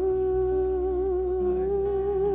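A woman's voice holding one long note in a worship song, steady at first and wavering gently near the end. Soft sustained instrumental chords sit beneath it and shift to a new chord about one and a half seconds in.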